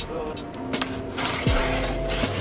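Blade slicing through the packing tape of a large flat cardboard box: a click a little under a second in, then a rasping hiss through the second half.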